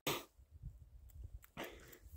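Faint low rumble and rustle of a bicycle being walked on wet pavement, with a sharp click at the very start and two short breathy sounds, the louder one about one and a half seconds in.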